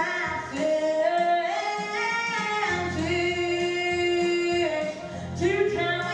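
A girl singing a song into a microphone, holding one long note from about three seconds in for nearly two seconds.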